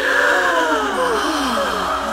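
A group of voices crying out together in admiration, overlapping drawn-out 'ooh' and 'aah' exclamations that mostly fall in pitch.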